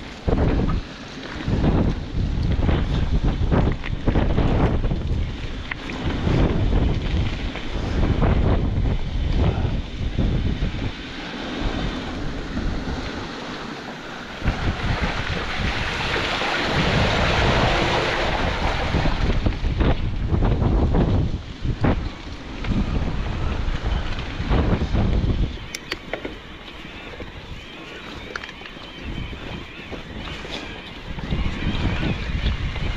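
Wind buffeting a mountain bike's handlebar camera microphone over the rumble and rattle of the tyres on a rough track. Midway through, a few seconds of steady hissing spray as the tyres ride through deep standing water.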